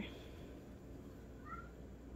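A cat gives one brief, faint meow about one and a half seconds in, over a low steady room hum.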